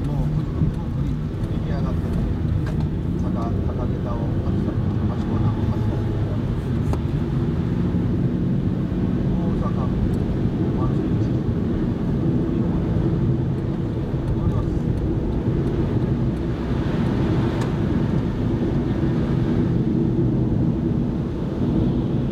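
Steady engine and tyre drone of a car driving on a snowy road, heard from inside the cabin. There is a stretch of added hiss about three quarters of the way through.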